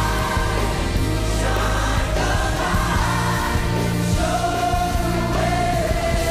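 Gospel-style worship music with a choir singing over a steady bass, one long note held from about four seconds in.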